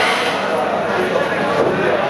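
Several men's voices talking at once: steady, overlapping chatter with no single clear voice.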